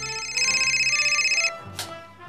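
Telephone ringing with a fast electronic trill, one loud ring lasting about a second that cuts off about three quarters of the way in, over background music.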